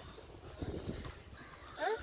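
Footsteps climbing stone steps, a faint irregular patter of steps, with a short rising voice near the end.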